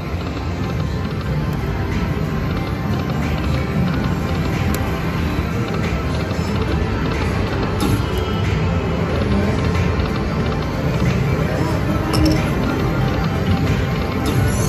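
Casino floor din: slot machine game music and spin sounds playing steadily, mixed with background voices.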